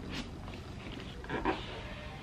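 Faint cardboard rubbing as the lid of an Apple MacBook Air box is slid up off its base, with a soft click near the start and a brief excited vocal sound about one and a half seconds in.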